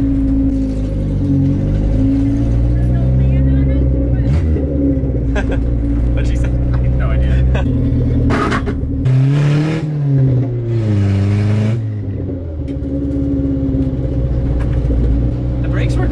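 Toyota Corolla TE72 wagon's four-cylinder engine running on open headers with no exhaust, heard from inside the cabin while driving. The engine note holds fairly steady, then climbs and falls again about nine to twelve seconds in.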